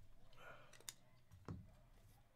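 Faint clicks and light plastic handling of a clear magnetic one-touch card holder being fitted over a trading card, with a slightly louder click about a second and a half in.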